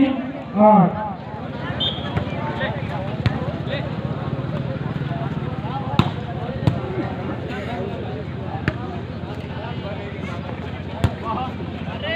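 A volleyball being struck by players' hands during a rally: about five sharp slaps, the loudest about halfway through and near the end, over a steady murmur of crowd noise.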